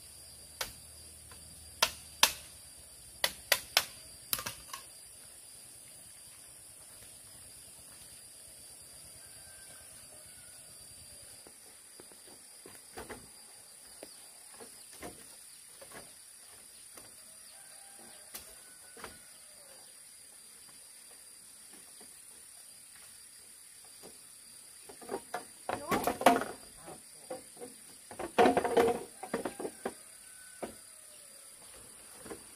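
Dry bamboo knocking: a handful of sharp knocks in the first few seconds as a bamboo lattice panel is handled, then a loud clattering rattle near the end as a panel is lifted and set against the frame. A steady high insect drone runs underneath.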